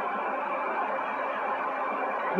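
Steady background hiss with a faint constant hum underneath, unchanging throughout.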